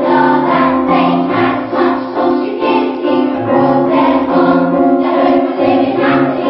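A group of children singing a song together over musical accompaniment.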